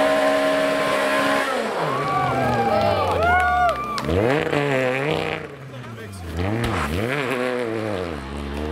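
Peugeot 208 rally car's engine running at steady high revs with the car stuck in a snow bank, while spectators push it free. From about halfway in, the revs rise and fall again and again as the driver tries to drive out. Voices are heard among the engine noise.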